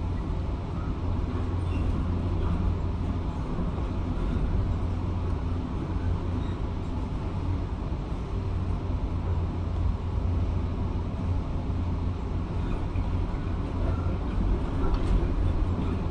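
Heavy demolition excavator running as a steady low rumble, heard through window glass, with no distinct crunches or impacts standing out.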